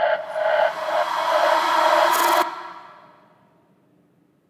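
Closing bars of an electronic drum and bass track with the drums and bass gone: a held, noisy electronic texture swells and then cuts off about two and a half seconds in. Its echo dies away to silence within the next second.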